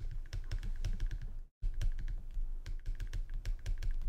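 Pen stylus tapping and scratching on a drawing tablet during handwriting: a quick, irregular run of light clicks with soft knocks through the desk.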